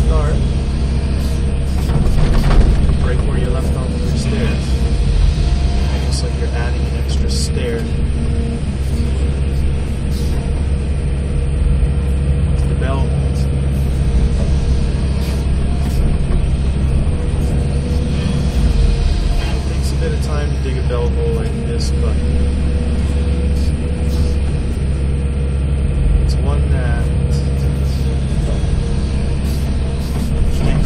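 Tracked excavator's diesel engine running steadily under digging load, heard from inside the cab, with a whine that rises and falls from the hydraulics as the boom and bucket work. Occasional short knocks come from the bucket and rocks.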